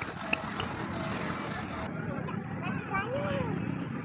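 Faint distant voices over a steady outdoor background noise.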